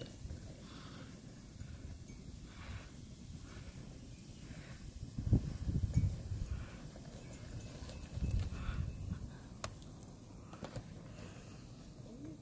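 Wind buffeting the microphone as a low rumble that surges twice, with faint crunching footsteps in snow.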